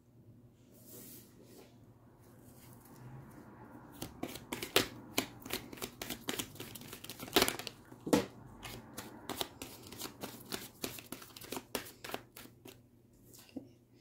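A deck of tarot cards being shuffled by hand: a dense run of quick card snaps and slaps that starts a few seconds in and stops shortly before the end.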